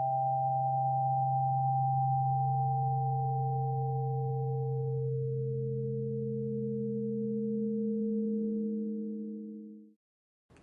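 Pure sine tones from a Pythagorean tone generator, two or three notes held together over a low tone. One note drops out and another comes in every few seconds, and all stop together just before the end.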